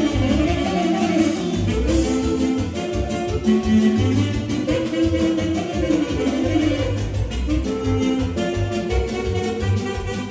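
Live band playing instrumental circle-dance music, a hora, with a steady driving beat and a melody line running over it.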